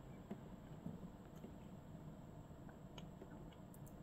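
Near silence: a faint low background rumble with a few faint ticks near the end.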